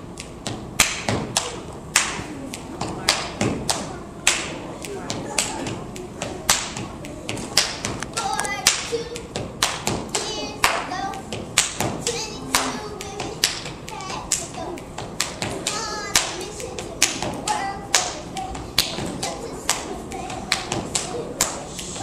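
A solo step routine: a quick, uneven run of sharp hand claps and foot stomps on a stage floor, with a few brief voices between them.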